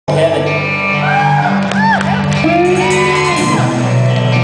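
A rock band playing live on electric guitars and bass: long held low notes that change twice, with shouts and whoops rising and falling in pitch over them in the first half.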